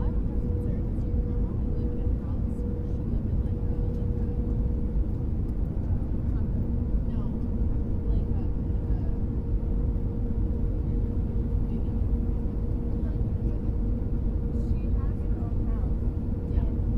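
Airliner cabin noise in flight: a steady deep rumble with a constant hum running over it.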